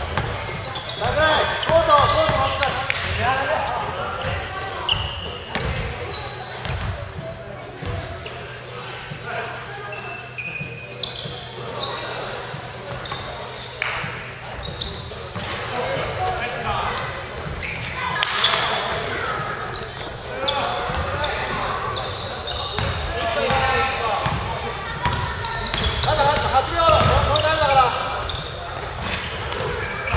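A basketball bouncing on a wooden gym court during play, with players' voices calling out indistinctly throughout and a few brief high squeaks.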